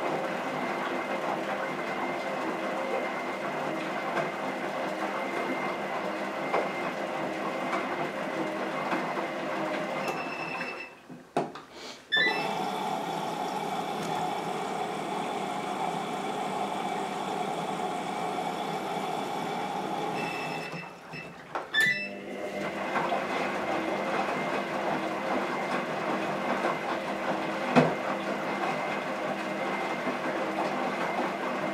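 Gorenje WaveActive washing machine drum tumbling a wet load in the C09 service-test step: a steady motor whine as the drum turns. It stops briefly twice, about ten and twenty-one seconds in, as the drum changes direction, and the stretch between sounds different from the rest. A single knock comes near the end.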